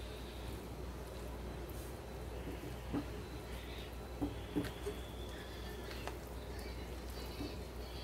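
Quiet stirring of a thick chicken-and-cheese white sauce with a silicone spatula in a frying pan, with a few light knocks of the spatula against the pan, over a steady low hum.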